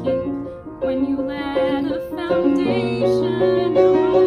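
Piano accompaniment to a musical-theatre song, playing a run of moving chords and single notes, with a woman's singing voice coming in over it in the second half.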